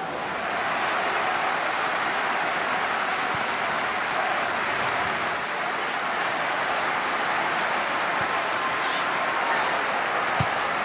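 Football stadium crowd applauding, a steady dense clapping that swells about half a second in.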